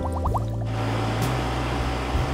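A short musical sting of quick rising glides, like rapidly strummed or plucked notes, ends about two thirds of a second in. It gives way to a steady hiss with a low hum under it.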